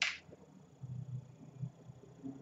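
A short, sharp swish of paper and clipboard being handled right at the start, then faint low shuffling sounds.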